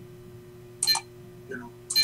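A steady low background hum, broken by a man's brief spoken "you know" in the second half.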